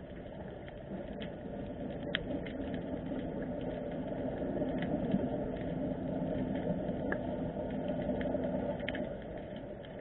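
Underwater sound of harbour water recorded through the camera: a steady wash of noise with scattered sharp clicks, and a low hum that builds from about two seconds in and fades near the end.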